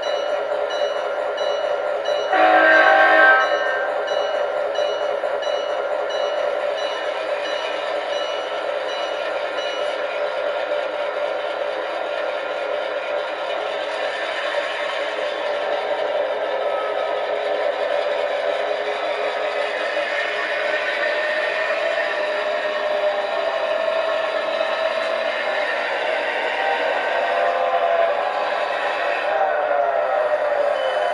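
Sound of an EMD GP9 diesel locomotive from the model's LokSound decoder speaker: the engine runs steadily while the bell rings at an even pace for about the first ten seconds, and one short horn blast comes about two and a half seconds in.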